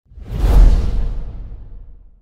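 An intro sound-effect whoosh with a deep bass boom, swelling in over about half a second and then fading away over the next second and a half.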